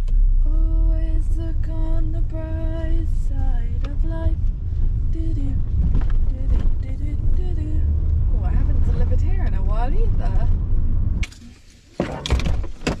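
Honda car's engine and road rumble heard inside the cabin while driving, with a melody of held and sliding notes over it. The rumble cuts off abruptly near the end.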